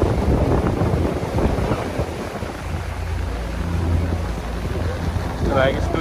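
Wind buffeting the microphone, a steady low rumble, with faint voices in the background; a voice comes in close near the end.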